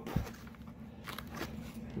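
Faint handling noise: a few light clicks and rustles over a quiet room.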